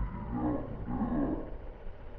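Walk-behind lawn mower's engine being cranked by its pull-cord starter: two short whirring pulls, rising and falling in pitch, without the engine running.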